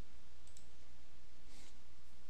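Two soft computer mouse clicks, about half a second in and again about a second later, over a steady low electrical hum.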